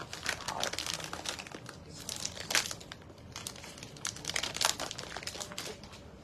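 Clear plastic wrapping crinkling as a small quilted handbag is handled inside it, giving irregular crackles and rustles.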